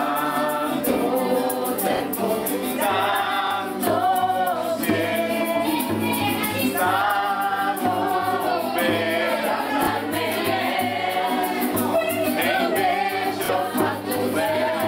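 A group of men and women singing a song together, with a low steady accompaniment underneath from a few seconds in.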